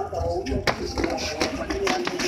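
A few sharp smacks of gloved punches and kicks landing during kickboxing sparring, the clearest about two-thirds of a second in, with voices talking faintly underneath.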